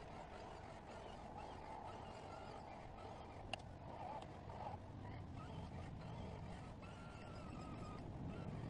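Faint, steady whine of a radio-controlled crawler's electric motor and drivetrain as the truck churns slowly through deep mud, with one sharp click about three and a half seconds in.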